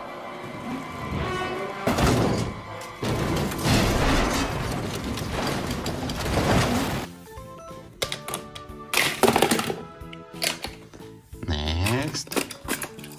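Film soundtrack of an animated stock-car crash: a race car slamming and tumbling, with heavy impacts over music. After about seven seconds the crash noise gives way to quieter, sparser music.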